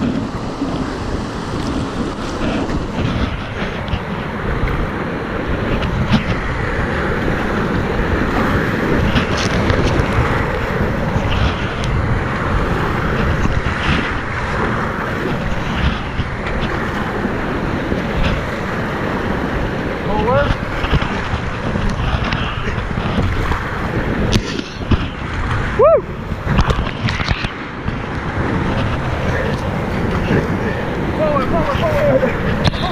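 River rapids rushing loudly and steadily around a small kayak, with splashes from the paddle strokes and wind buffeting the microphone.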